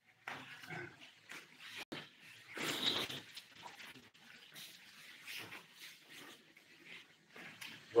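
Faint rustling and shuffling of a group of monks' robes and bodies as they bow down to the floor in a pause between chants, with a sharp click about two seconds in.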